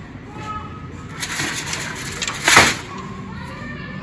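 Store background with faint far-off voices, and a short noisy scuff about two and a half seconds in, the loudest moment.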